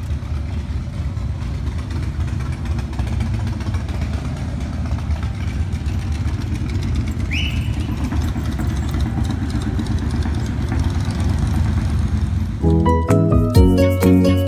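Low, steady rumble of a motorcycle engine running, with music starting suddenly near the end.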